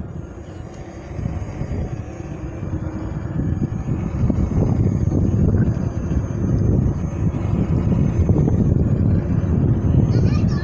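Wind buffeting the microphone and tyre rumble on asphalt while riding an electric unicycle at speed: a low, rushing roar that grows louder as the ride speeds up and stays strong through the second half.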